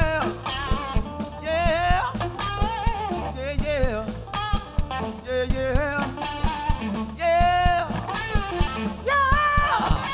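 Live blues-rock band: an electric guitar plays a lead line full of string bends and vibrato over bass guitar and drum kit.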